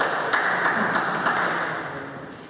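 Short burst of applause from a small audience, dense hand claps fading away near the end.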